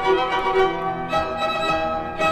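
Chamber ensemble of two violins, viola and piano playing an instrumental passage of classical music, the notes changing several times a second, with a change of harmony about a second in.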